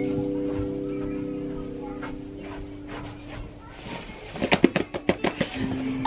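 Acoustic guitar chord ringing out and slowly fading, followed near the end by a quick run of sharp knocks and clatter.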